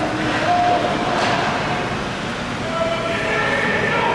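Ice hockey game ambience in a rink: a steady wash of skates on the ice and spectators calling out, with a brief hiss about a second in.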